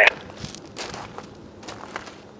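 Faint, irregular crunching and clicks, like footsteps on gravel.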